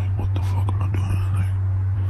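A steady low hum, with faint whispered mouth and breath sounds in the first second and a half that then die away.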